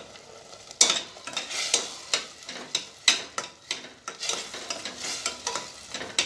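A metal spoon scraping and stirring mashed onions that are frying in hot oil in a stainless steel saucepan, over a steady sizzle. The spoon scrapes the pan repeatedly, two or three strokes a second, starting about a second in with the loudest stroke.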